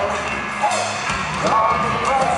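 Live punk rock band playing: a sung lead vocal over electric guitar, bass and drums, recorded from inside the audience, so the mix sounds loud and roomy.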